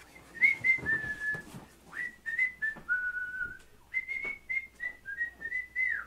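A person whistling a tune: runs of short notes broken by two longer, lower held notes, with a few faint knocks as he moves.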